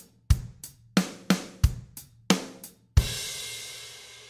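Drum kit playing a simple beat, bass drum on 1 and 3 and snare on 2, the 'and' of 2, and 4. About three seconds in it stops on a final bass drum and cymbal crash that rings out and slowly fades.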